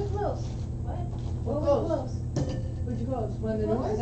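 Indistinct conversation of people talking off-microphone in a room, over a steady low hum, with one sharp click or knock a little past halfway.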